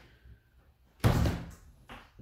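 A wooden interior door being pushed open, banging loudly once about a second in, then a shorter knock near the end.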